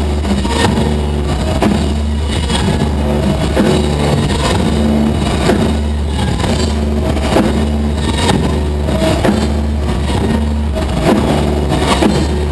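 Live rock band playing loud, led by a heavy, droning electric bass guitar with drum strikes landing at a regular beat.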